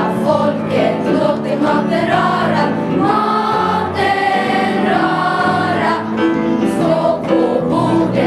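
A school children's choir singing together.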